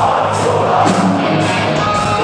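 Heavy metal band playing live at full volume, electric guitars, bass and drums, picked up from the audience in a large hall.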